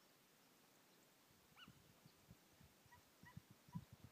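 Faint, distant yelps of hunting hounds giving tongue on a hare's trail: one drawn-out yelp about one and a half seconds in, then three or four short yelps near the end, with scattered low thumps on the microphone.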